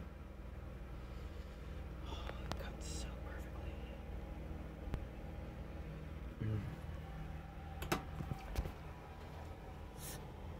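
A knife scraping and cutting through crumbly bread in a glass dish, with a few short scrapes and clicks, over a steady low room hum. A brief murmured "mm" comes about six and a half seconds in.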